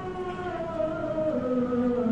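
A man's voice chanting in long held notes that glide slowly from one pitch to the next, in the manner of melodic Arabic recitation.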